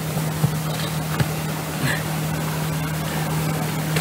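A steady low hum, like a motor running, with a few short soft clicks and knocks as a mooring rope is tied off at a wooden post.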